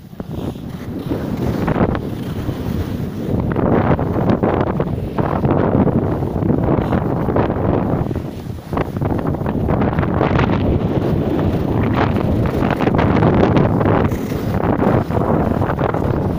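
Wind rushing and buffeting over the microphone of a handheld camera carried by a skier moving downhill, building up over the first couple of seconds and easing briefly about halfway through.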